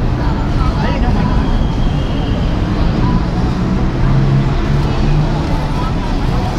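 City street ambience: a steady low rumble of traffic, with indistinct voices of people talking.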